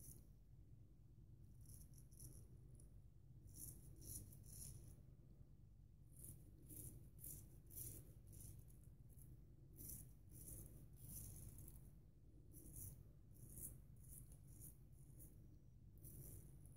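Faint, crisp rasping of a straight razor (a vintage Wade & Butcher 15/16 wedge) cutting stubble through shaving lather. It comes as a series of short strokes in small groups with brief pauses between them.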